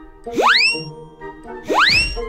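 Light background music with two loud comic sound effects laid over it, each a fast rising whistle-like sweep that levels off at the top, about a third of a second in and again near the end.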